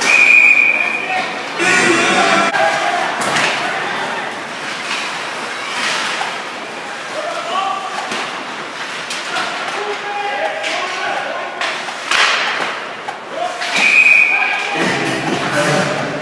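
Referee's whistle blowing twice, for about a second at the start and again about two seconds before the end, amid the sharp knocks of sticks and puck in an ice hockey game and players' shouting.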